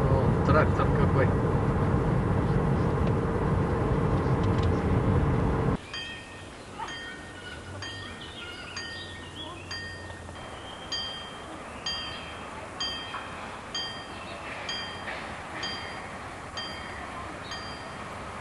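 Steady road and engine noise inside a moving car, which cuts off abruptly about six seconds in. Then a railway level crossing's warning bell rings in even strikes, about two a second: the crossing is closed for an approaching train.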